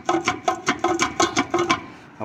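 Quick metallic clicking, about four clicks a second, from the RV's removed tailstock assembly as its spindle and loosened lock nut are worked by hand. The play comes from bearings that the owner thinks are wrecked.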